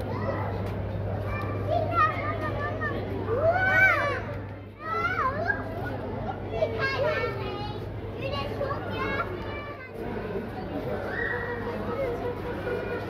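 Children chattering and calling out excitedly, several high voices rising and falling throughout, over a steady low hum.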